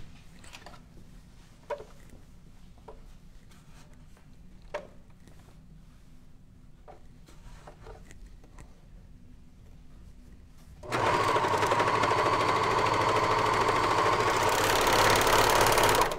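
A few faint clicks of fabric being handled, then about eleven seconds in a Janome AirThread serger starts suddenly and runs steadily at speed, overlocking the side seam of a stretch-knit garment.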